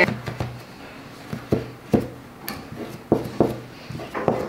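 Several light knocks and taps, spaced irregularly, from hands handling a small cardboard box and a folded cardigan on a table, over a faint steady low hum.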